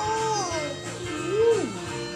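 A toddler's wordless vocal sounds, a falling call and then a louder rising-and-falling one about a second and a half in, over background music with a steady beat.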